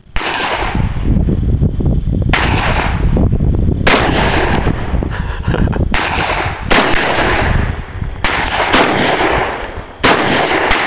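Taurus Public Defender revolver fired repeatedly, shot after shot one to two seconds apart, each sharp crack followed by a long loud tail.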